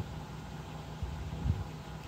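Steady low background hum with faint noise beneath it, swelling slightly about one and a half seconds in.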